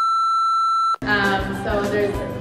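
A steady electronic beep, one high tone held for about a second, that cuts off abruptly.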